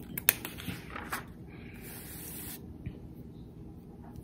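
Hymnal pages being handled and turned: a sharp click near the start, a few light ticks, then a brief paper hiss about one and a half seconds in.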